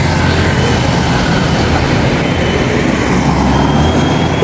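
A motor vehicle's engine running close by, a loud, steady low rumble with a faint thin whine above it.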